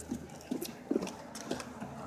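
A few soft, irregular knocks and rustles, the handling and footstep noise of a phone camera being carried by someone walking.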